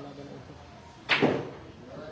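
A pool cue striking the cue ball in a hard shot, one sharp, loud crack about a second in, over a low murmur of crowd chatter.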